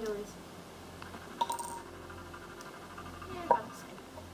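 Two sharp plastic clicks with a brief ringing tail, about two seconds apart, the second louder, from an injection pen being handled and its needle fitted.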